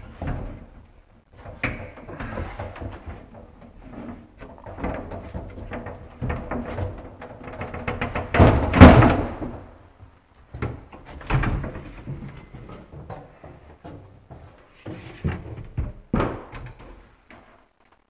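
Large wooden control wall panel of a platform lift cabin being lifted and slid out by hand: a run of irregular bumps and knocks as it is handled. The loudest thump comes about halfway through.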